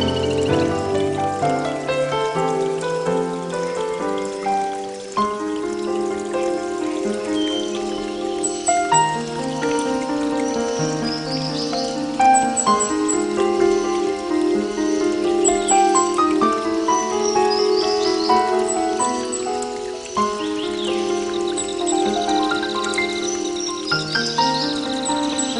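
Instrumental background music with soft, sustained, overlapping notes. Short high chirps recur every few seconds above it.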